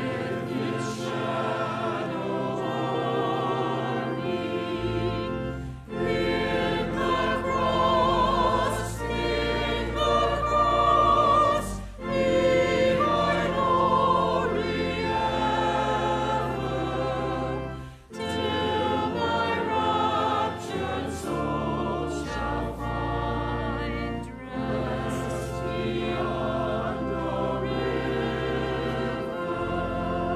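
A church choir singing in parts over sustained low accompaniment notes. The phrases break with short pauses about every six seconds.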